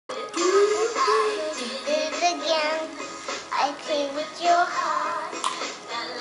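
Karaoke music playing with a high child's singing voice over the backing track.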